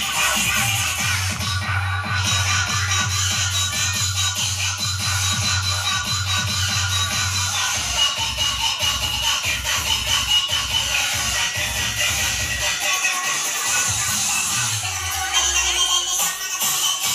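Live band music led by an electronic keyboard, played loud through a PA system, with a steady beat and bass line. The bass drops out for a moment near the end.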